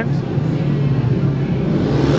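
Four speedway bikes' single-cylinder 500 cc methanol engines running steadily at the start gate while the riders wait to line up for the start.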